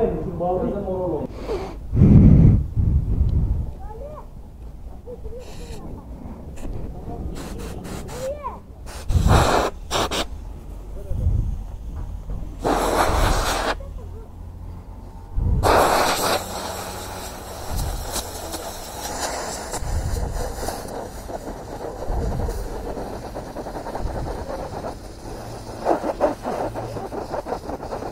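Compressed air from a blow gun hissing through a dusty scooter air filter element in several short bursts, the longest about a second and a half, blowing the dust out from the back side. A loud low rumble comes about two seconds in.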